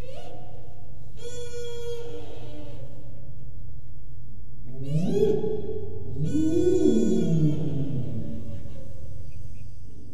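Duet of a tuba and a blown hadrosaur-skull instrument, a mechanical larynx sounding through a replica Corythosaurus crest. A steady low drone runs under bright, buzzy reed-like tones about a second in and again around six seconds. Between about five and eight seconds come low moaning calls that slide up and down in pitch.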